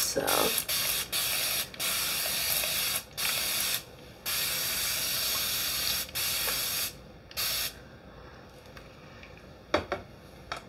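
Hand-held water spray bottle misting wet hair in a run of long, even hissing sprays, about six in all, stopping a little before eight seconds in. The hair is being wetted thoroughly for brush styling.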